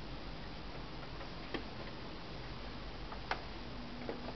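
Faint steady hiss with two isolated sharp clicks, one about one and a half seconds in and a louder one near three and a half seconds; no music yet.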